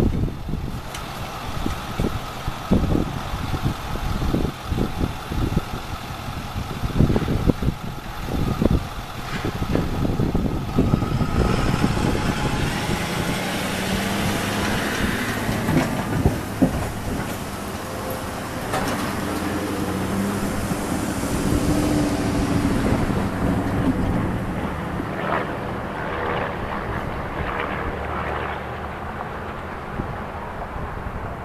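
Wind gusting on the microphone for roughly the first ten seconds, then a CRANDIC (Cedar Rapids and Iowa City Railway) freight train's boxcars rolling slowly across a road crossing while switching, with a steady rumble of wheels on rail.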